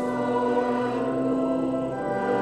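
Church congregation singing a metrical psalm in Afrikaans, with organ accompaniment, on one long held note that moves to the next near the end.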